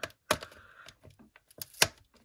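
Fingers picking at a small taped clear plastic bag: a few sharp plastic clicks and crinkles, the loudest just before the end.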